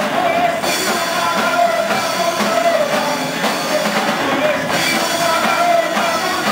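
A live punk blues band playing loudly: electric guitar and drum kit, with a singer's voice over them.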